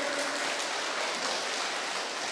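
Audience of children applauding: steady, even clapping that eases off slightly near the end.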